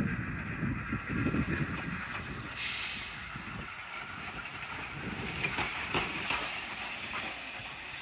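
Small tank steam locomotive moving slowly past, its low running rumble fading after the first few seconds, with a short sharp hiss of steam about two and a half seconds in and fainter hisses later.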